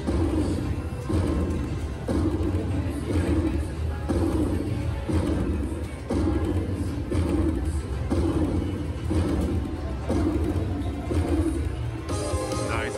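Ultimate Fire Link slot machine playing its win-tally music as the win meter counts up, a short phrase repeating about once a second.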